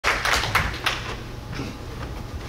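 A few short, sharp taps in quick succession, loudest in the first second and fading by about a second and a half, over a steady low room hum.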